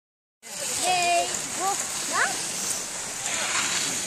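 Short, high-pitched children's calls and voices, some rising in pitch, over a steady hiss.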